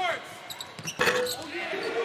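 A basketball bouncing on a hardwood court, heard as a few short knocks in a large, echoing arena. Crowd and player voices rise about a second in.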